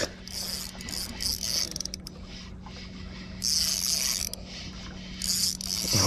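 Shimano Vanford 4000XG spinning reel working against a hooked fish on a bent light jigging rod: a mechanical whirring and clicking, with two louder, higher-pitched spells about three and a half and five seconds in.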